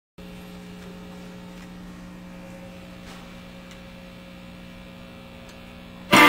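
Steady electrical mains hum and buzz from a switched-on electric guitar amplifier rig, with a few faint clicks.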